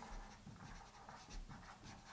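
Faint scratching of a dry-erase marker writing on a whiteboard in short strokes.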